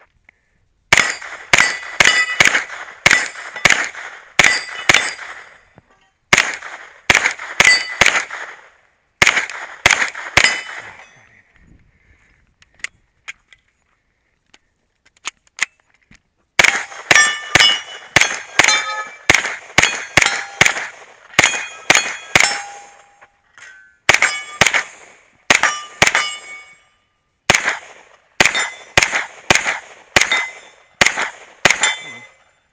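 Rapid strings of pistol-caliber carbine shots, each followed by the ring of a steel target being hit. The shots come in quick bursts of several, with a pause of about four seconds near the middle.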